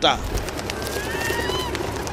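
A bird's single drawn-out whistled call, rising slightly and then dropping away, over a steady hiss of outdoor background noise.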